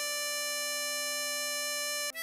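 Tremolo harmonica holding one long steady note, the hole 10 draw (D5), cut off right at the end.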